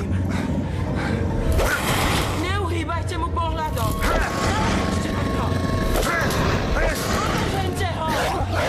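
Audio-drama commotion: wordless shouts and cries over dramatic background music.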